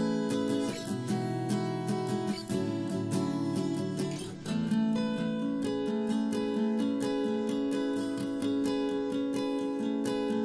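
Strummed acoustic guitar playing an instrumental passage of a song with no singing, with a brief dip about four seconds in before the strumming picks up again.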